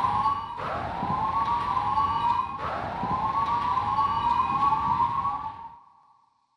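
Police siren sound effect: wails rising in pitch, a new one starting about every two seconds, each trailed by echoing repeats, fading out just before the end.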